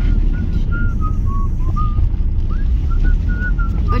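Low steady rumble of a car on the move, heard inside the cabin, with a person whistling a tune of short, clear notes over it.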